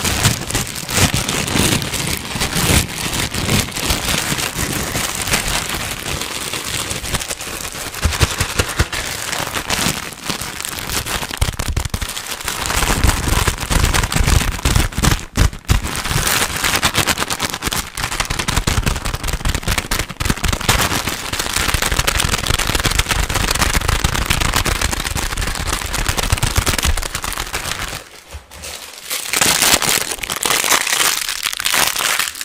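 Plastic packaging crinkled and crumpled fast and hard right at a microphone: a dense, loud crackle of sharp snaps, with a brief lull near the end.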